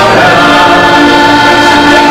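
A man sings while accompanying himself on a diatonic button accordion (heligonka), its reeds sounding a held chord under the voice.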